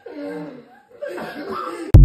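Several men chuckling and laughing. Near the end this is cut off by the sudden, much louder start of the TikTok outro jingle.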